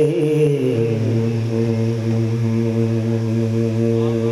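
Male chanted recitation: the sung line glides down in the first moment and settles into one long, steady, low held note.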